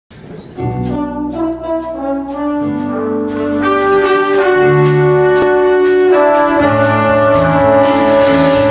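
A band playing instrumental music: held chords over a steady beat of about two strokes a second, coming in fully about half a second in.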